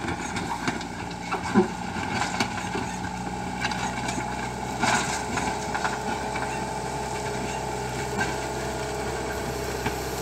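Backhoe loader's diesel engine running steadily as the machine pushes soil and cut brush with its front bucket, with a few short knocks along the way.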